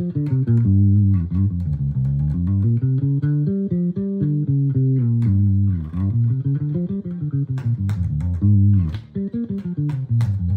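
Electric bass guitar playing the G blues scale note by note in a continuous run of single plucked notes, climbing and descending within one hand position, with a brief pause a little before the end.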